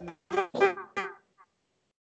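A conch shell blown in three or four short honking toots, each falling in pitch, within the first second or so. Heard over a video call.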